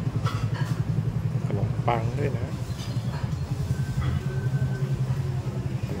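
Steady low motor rumble, like an engine running nearby, under a few spoken words.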